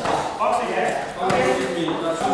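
Several voices call out during a kickboxing bout, with one sharp thud of a blow landing about a second and a half in.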